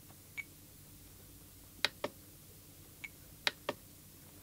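About six soft, unevenly spaced clicks from the RadioMaster Boxer transmitter's scroll wheel and buttons as a menu value is stepped. Two of them come with a short high beep from the radio.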